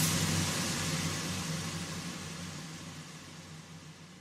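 The tail end of an electronic trance track: a hissing white-noise wash with a faint low held note beneath it, fading steadily out after the last beat.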